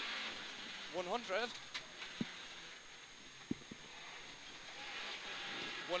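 Peugeot 106 GTi rally car's engine and road noise heard from inside the stripped cabin, dipping in the middle and then building again as the car pulls on. Two sharp knocks come through partway along.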